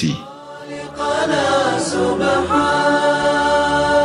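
Background music of a vocal chant that comes in about a second in and holds long, sustained notes.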